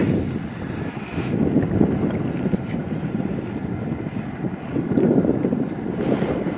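Wind buffeting the camera microphone on a moving bicycle: an uneven low rumble that swells and fades, loudest about five seconds in.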